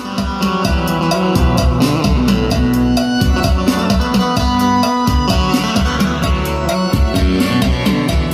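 Music with drums, bass and guitar played loud with a steady beat through a Kinter MA-700 mini 12 V amplifier driving a BMB speaker, as a sound test of the amplifier.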